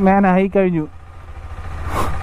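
KTM 390 Adventure's single-cylinder engine idling with a low, even rumble.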